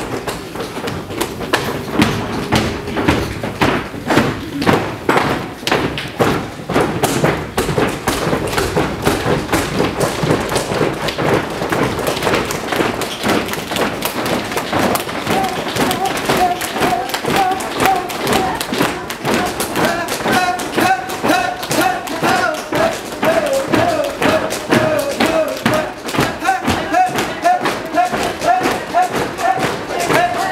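A roomful of people tapping and thumping with their hands in many overlapping, unsynchronised beats. About halfway through, voices join in on a wavering held note over the tapping.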